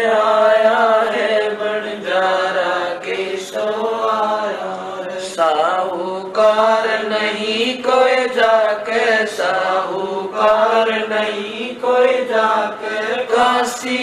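A woman chanting Hindi devotional verses to a slow melody in long, wavering held notes, with short breaks between phrases.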